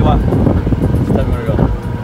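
Golf cart driving over the fairway: a steady low drone from its motor and tyres, with some talking over it.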